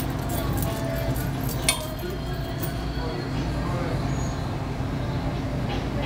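Steady low hum and faint background voices of an indoor public room, with light clicks and one sharp clink a little under two seconds in.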